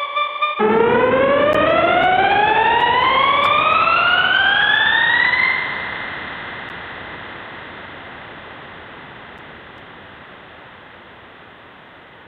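Electronic tone from the Fragment software synthesizer: a harmonic tone glides steadily upward in pitch for about five seconds, like a slow siren. It then gives way to a hissing wash that fades away gradually.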